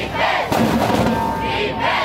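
High school marching band in the bleachers, with drums, cymbals and horns playing while the band members shout a chant together.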